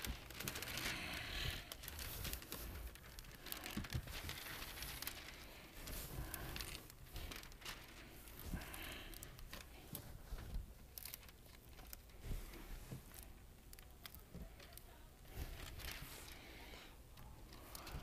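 Plastic window tint film being handled on a wet car window: faint, irregular crinkling and rustling with scattered small clicks.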